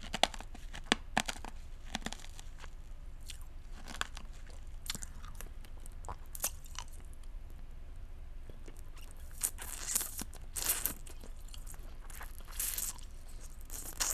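Close-up mouth sounds of rock candy crystals being bitten and crunched. There are sharp cracks in quick succession in the first two seconds, then scattered clicks, and longer crunching bursts near the end.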